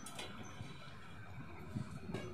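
Quiet room tone with a faint low hum and a few soft clicks, just after the start and again near the end.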